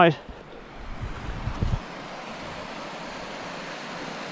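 Steady wind noise, with low gusts buffeting the microphone for the first couple of seconds before it settles to an even rush.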